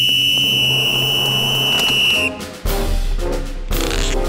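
A whistle blown in one long, steady, shrill blast that cuts off a little over two seconds in. Brassy music with a low bass line then starts.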